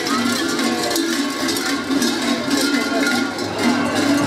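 Many large cowbells worn on the belts of sheepskin-costumed mummers clanking continuously and irregularly as they move, with some voices underneath.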